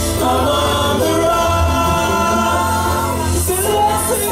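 Live band music with several voices singing sustained lines over a steady bass.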